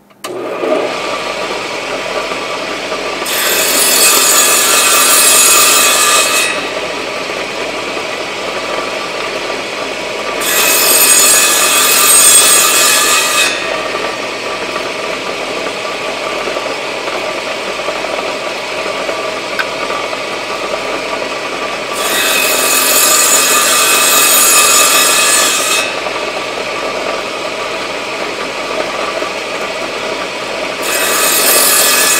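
Table saw starting up and running steadily, with three cuts about 3 to 4 seconds each as a small wooden coaster top is pushed through a shallow-set blade. Each cut is a louder, hissing stretch over the free-running blade.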